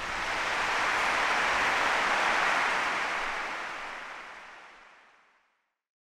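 A soft swell of rushing noise, like a long whoosh sound effect under the closing graphics. It rises over the first second, holds, then fades out to silence a little after five seconds in.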